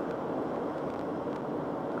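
Steady road noise inside the cabin of a car driving along a dual carriageway.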